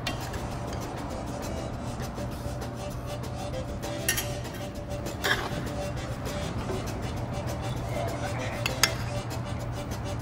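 Background music with a steady bed, over which a metal serving spoon clinks against a cast-iron pot and ceramic plates as food is dished out: three sharp clinks, about four seconds in, about five seconds in, and near the end.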